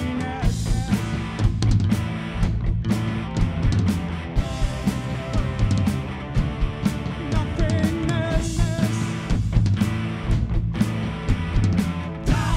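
Gothic rock band playing live, with drums, bass and electric guitar. The drums strike steadily under sustained guitar tones.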